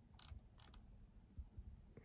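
Near silence with a couple of faint clicks in the first second, a computer mouse being clicked while the chart is worked.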